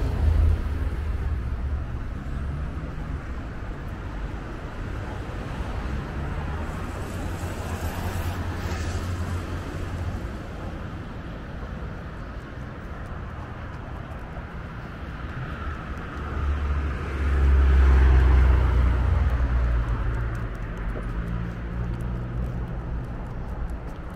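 Road traffic passing, a steady rumble of car engines and tyres, with a vehicle going by close about two-thirds of the way through, the loudest moment.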